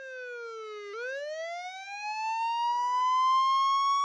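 Police siren wailing: a falling sweep in pitch, then about a second in a long, slow rise.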